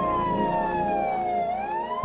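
Police car siren wailing: its pitch falls slowly for about a second and a half, then starts to rise again near the end.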